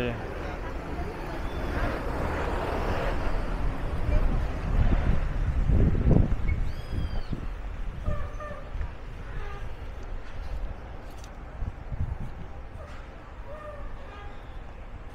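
Wind rumbling on the microphone during an outdoor street walk, with faint traffic and voices in the background, strongest about halfway through.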